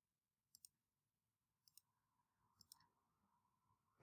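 Near silence broken by three faint pairs of computer mouse clicks, about a second apart, as lines are picked to place a dimension in a CAD sketch.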